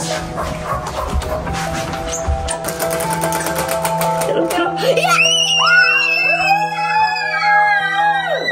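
A spinning prize wheel, its pointer flapper clicking rapidly against the pegs, over background music. About five seconds in, a girl lets out a long, high excited scream.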